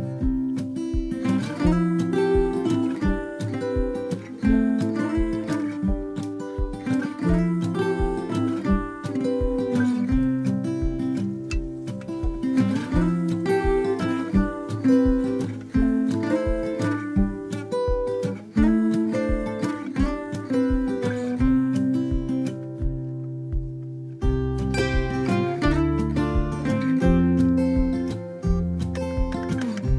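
Background music: an acoustic guitar track with a steady beat, which thins out briefly near the end and then comes back in fuller.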